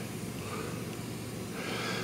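Steady soft hiss of a handheld butane soldering tool blowing hot gas onto a solder-seal wire connector to melt the solder inside it.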